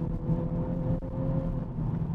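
Cabin noise of a 2021 Honda Civic Type R on the move: its turbocharged four-cylinder engine and the road give a steady low rumble, with a faint tone that rises slightly in pitch.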